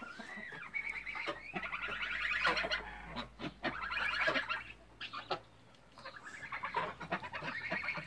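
A flock of domestic grey geese honking, the calls coming in three overlapping bouts with short lulls between them.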